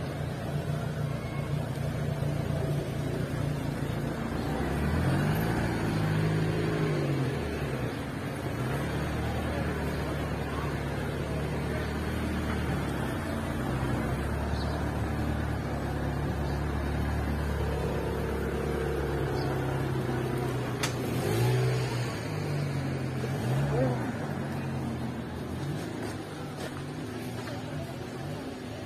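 Car engines running on a street, one idling with a steady low hum while others rev, their engine note rising and falling, about a fifth of the way in and again about three-quarters through.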